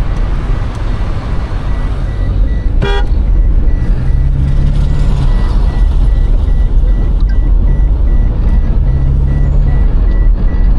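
Steady engine, road and wind noise inside a moving minibus, with one short horn toot about three seconds in.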